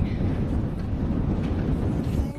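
Wind buffeting the microphone of a handheld camera: a loud, steady low rumble.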